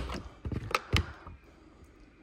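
A few sharp clicks and knocks, three within the first second or so, as metal body clips are pushed back onto an RC truggy's body posts and its plastic body shell is handled.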